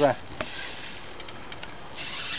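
Fishing reel on a feeder rod being worked while a hooked carp is played: faint ticking over a steady hiss, with one sharper click about half a second in.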